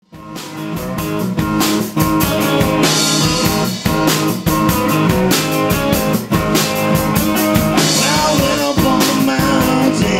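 Live band playing a hill-country blues number with guitar and drum kit to a steady driving beat, fading up from silence over the first couple of seconds.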